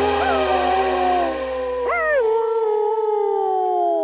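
A husky-type sled dog howling: long calls that rise sharply in pitch and then slide slowly down, a fresh howl starting about halfway through.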